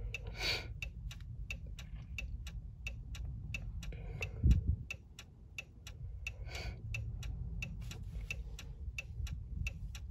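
A 2014 Chrysler 300's hazard lights ticking steadily, about three clicks a second, with a brief low thump about four and a half seconds in.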